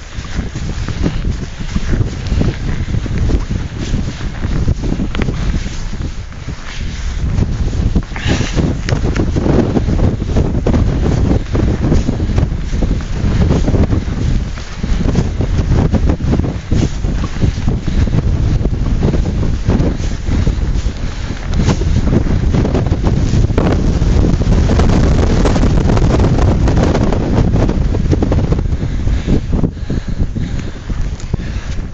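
Strong wind in a mountain snowstorm buffeting the camera's microphone: a loud low rumble that rises and falls in gusts, heaviest and steadiest over the last third.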